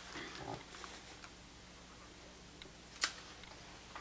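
Quiet room with faint rustling of a fabric project bag being handled in the first half second, and one sharp click about three seconds in.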